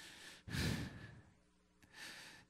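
A man's breath, a sigh, into a handheld microphone held close to the mouth, loudest about half a second in.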